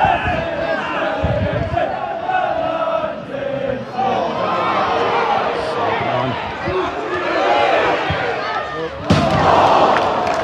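Football crowd on the terraces, many voices shouting and singing at once. About nine seconds in, the crowd rises suddenly into a louder roar.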